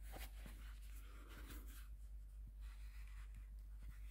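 Faint handling noise: a cotton glove rubbing and scuffing against a small badge presentation case as it is picked up and turned, in a few short rustles over a low steady hum.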